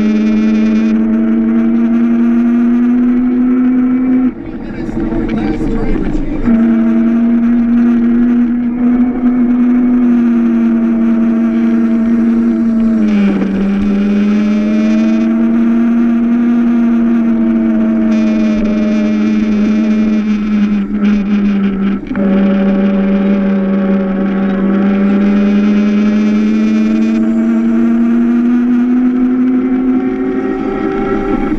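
Onboard sound of an electric Power Racing Series kart's drive motor whining steadily under power. The pitch sags as the kart slows for turns and climbs again as it speeds back up, with a brief break about four seconds in.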